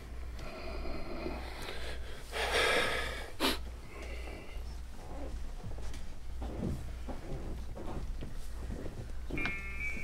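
A person's sharp sniff about two and a half seconds in, followed by a single click, over a low steady hum.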